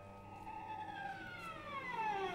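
Singing bowls' ringing dying away while a bowed string instrument plays a slow, long downward glissando that starts about half a second in.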